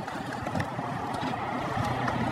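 Skateboard trucks grinding along a concrete curb in a 50-50: a steady, rough scrape of metal on concrete.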